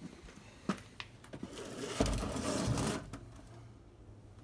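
Boxed die-cast collectible cars being handled: a few light clicks, then about a second of scraping and rustling of cardboard and plastic packaging, loudest about two seconds in.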